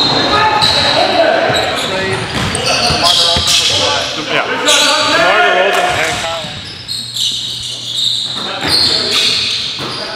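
A basketball bouncing on a hardwood gym floor, with players' shouts and chatter during play in a large gym hall.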